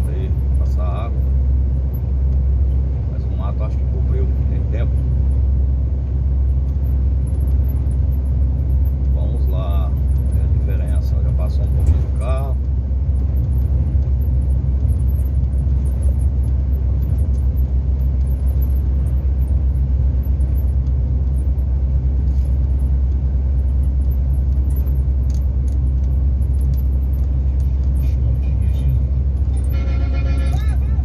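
Steady low drone of a semi-trailer truck's engine and road noise heard from inside the cab while cruising on the highway.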